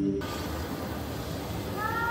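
Soundtrack of a projection show played over speakers: steady ambient music cuts off, a soft even hiss follows, and near the end a high, wailing, voice-like tone begins.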